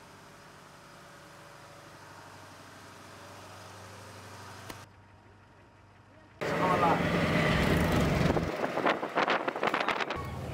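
Piaggio auto-rickshaw's small engine running: a faint steady low hum that slowly grows, then much louder from about six and a half seconds in, with a run of sharp clicks near the end.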